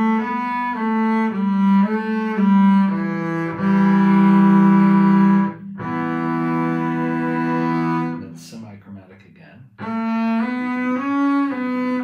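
Double bass played with the bow, in thumb position: short notes moving step by step for about three seconds, then two long held notes, a short break, and moving notes again from about ten seconds in.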